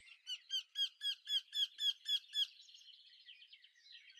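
A songbird calling a quick run of about nine repeated chirping notes, a little under four a second, followed by fainter, more scattered birdsong.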